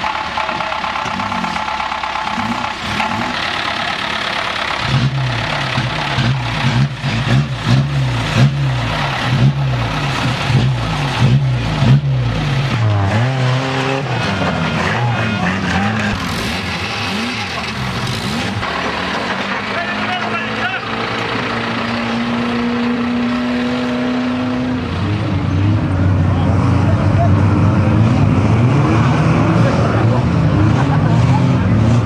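Banger-racing car engines revving up and down, with a run of sharp knocks and bangs through the first half. The engine sound grows louder and steadier near the end as several cars run together.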